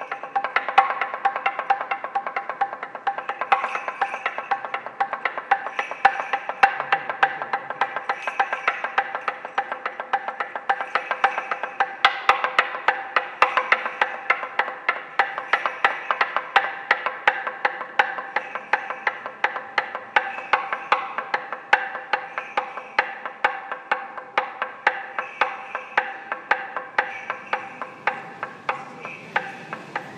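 Fast, continuous rhythmic knocking on wood, struck several times a second with uneven accents, over steady ringing tones held underneath.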